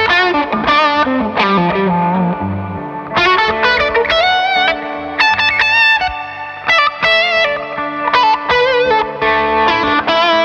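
Fender Player Plus Stratocaster electric guitar with Noiseless single-coil pickups, played through a Victory amp. It plays quick single-note runs and held notes with vibrato in the middle.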